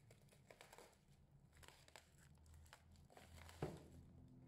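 Plastic packaging wrap on a parcel crinkling faintly as it is handled, cut and pulled open, with a sharp snap or knock about three and a half seconds in.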